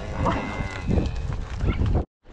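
Range cattle being driven through sagebrush: scattered knocks and rustles of hooves and brush over a steady low rumble.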